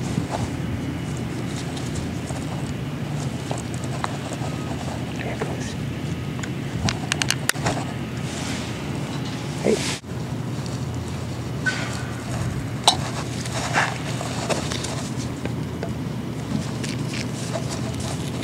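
Ratcheting PVC pipe cutter clicking as its blade is closed on a three-quarter-inch PVC irrigation pipe: a quick run of clicks about seven seconds in, with a few more later, over a steady low hum.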